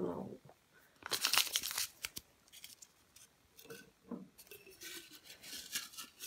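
Paper slips rustling and crinkling as a hand stirs them in a jar: a loud crackly burst about a second in, then softer scattered rustles.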